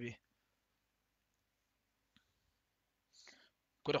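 Near silence between bursts of speech, broken by one short, faint click about two seconds in.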